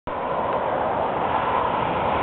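Steady road traffic noise from passing cars.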